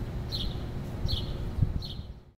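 A bird chirping outdoors, a short call repeated about twice a second, over a low rumble on the microphone.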